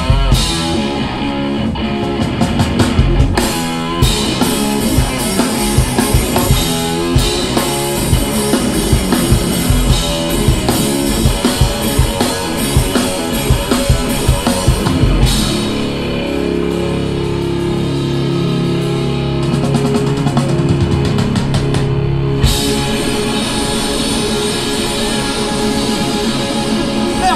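A live rock duo plays an instrumental passage on distorted electric guitar and a drum kit with Zildjian cymbals. The drums pound densely for about the first fifteen seconds, then drop back while the guitar holds sustained notes for several seconds. The drums come back in hard near the end.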